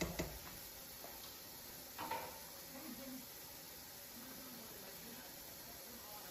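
Pot of gumbo simmering with a faint steady hiss. A slotted spatula taps against the stainless steel stockpot at the very start, and there is one short knock about two seconds in.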